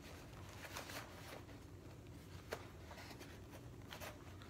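Faint handling of cardboard boxes as a small box is pushed into a mailing box, with a few light taps and clicks of the cardboard, the clearest about two and a half seconds in, over a low room hum.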